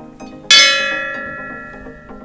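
A metal temple bell struck once, ringing out loud and fading over about a second and a half, over background music.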